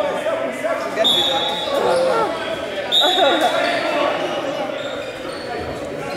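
Basketball game sounds in a gym hall: voices of players and spectators echoing, basketball bounces on the hardwood court, and two short high sneaker squeaks, about a second in and about three seconds in.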